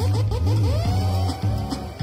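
A Nigerian pop DJ mix played through a laptop and DJ controller, with a steady deep bass beat. A swooping sound effect rides over it: quick repeated swoops at the start that stretch into longer sweeping tones toward the end.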